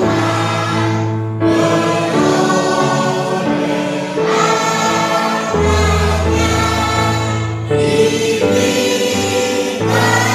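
A choir singing a hymn in slow, held chords, with the chords changing every second or two.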